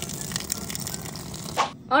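Cooking water drained from a metal pot, pouring in a steady stream onto brick and splashing on the concrete below; the pour stops near the end.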